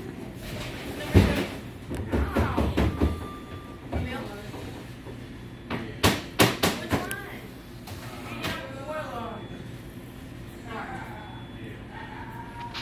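Indistinct voices of people talking, too unclear to make out, with one sharp thump about a second in.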